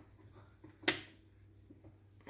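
A single sharp click a little under a second in, from the presser-foot area of a switched-off computerized sewing and embroidery machine being handled; otherwise quiet room tone.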